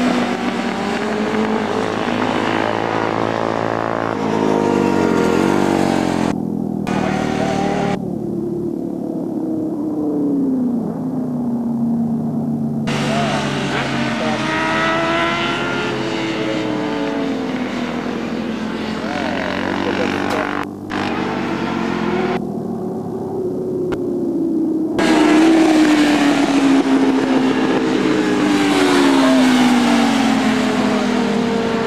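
Sportbike engines at high revs on a race track, the pitch climbing through each gear and dropping sharply at the shifts as the bikes pass, one run after another.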